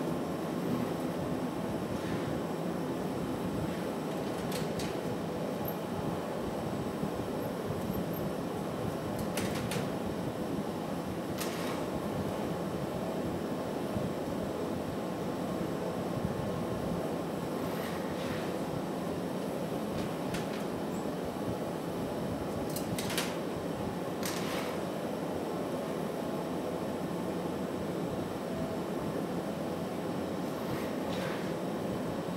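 Steady roar of a glassblowing hot shop's gas-fired furnaces and exhaust ventilation, with a few faint clicks scattered through it.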